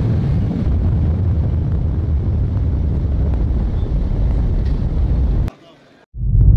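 Loud low rumbling noise with people's voices mixed in, cutting off suddenly about five and a half seconds in.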